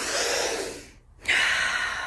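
A woman's audible breaths of delight: a breathy gasp, then a second, longer breath about a second later.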